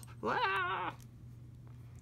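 A single short, high-pitched call with a wavering pitch, lasting well under a second, from a domestic animal.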